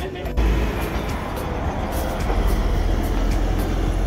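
Steady low rumble and road noise of a moving vehicle, heard from inside it. It starts abruptly just after the beginning.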